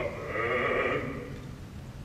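Operatic bass voice briefly holding a wavering note with vibrato at the end of a phrase, then a short hush in the music.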